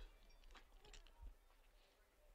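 Near silence from an open commentary microphone, with a few faint clicks.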